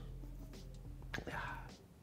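Mostly quiet: a soft, half-whispered spoken "ja" about a second in, over faint lingering background music that fades out near the end.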